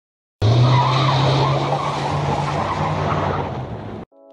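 Tyre squeal sound effect over a steady low hum, starting suddenly about half a second in and fading out near the end.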